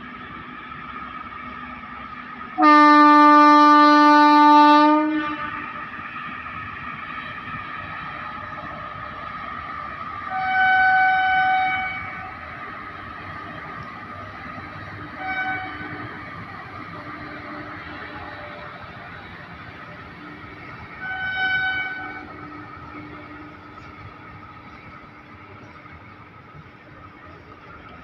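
Freight train of BTPN tank wagons behind a single WAG-7 electric locomotive running past, its wheels and wagons rumbling steadily. A loud horn sounds one long blast about three seconds in, and a higher-pitched horn sounds three shorter times later on.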